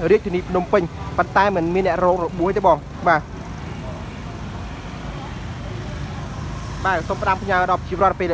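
People talking over steady street traffic and engine hum; the talking stops for about four seconds in the middle, leaving only the traffic noise, and starts again near the end.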